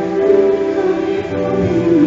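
Background music: a choir singing long held chords.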